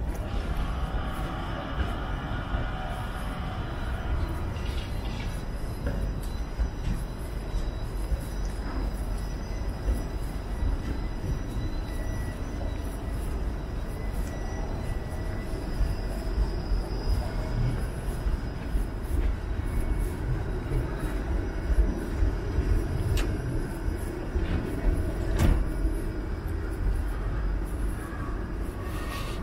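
Toronto TTC streetcar, a Bombardier Flexity Outlook, running on its King Street track: a steady low rumble with a faint thin high whine over it.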